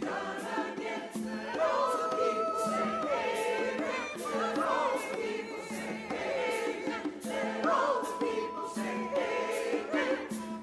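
Mixed church choir of men and women singing an anthem, with a few long held notes.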